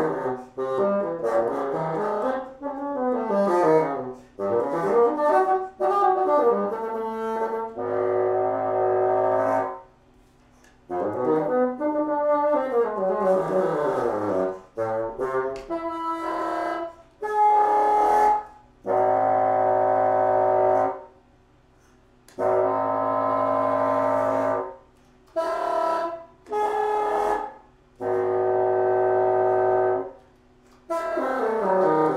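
Solo bassoon playing quick rising and falling runs, then long held notes broken by short pauses.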